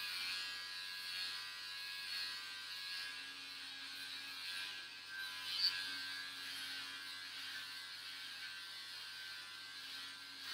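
Electric hair clippers running steadily while being run over a scalp, with one brief click a little past halfway.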